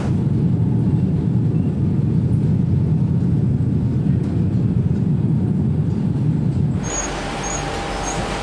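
Factory machinery running: a steady low rumble for about seven seconds, then a change to a quieter, hissier machine noise with a faint high chirp repeating about once or twice a second.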